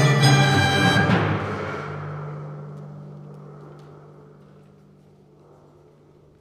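A school concert band's full ensemble stops on a loud final chord about a second in, and the sound then dies away slowly in the hall's reverberation, with a low note lingering longest as it fades.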